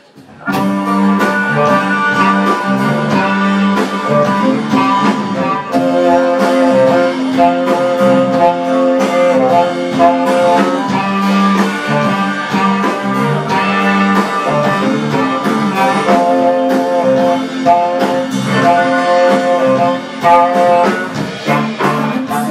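A live band playing an instrumental passage with electric guitar, saxophone, bass, drums and keyboard. The music starts abruptly about half a second in, with a steady drum beat under held saxophone and keyboard notes.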